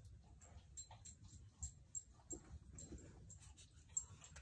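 Faint sounds from a pet dog, with scattered light clicks.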